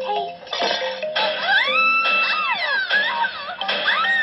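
Anime soundtrack heard through a laptop's speakers: background music, and a girl's long high-pitched cry that rises, holds and falls, as she slips and falls.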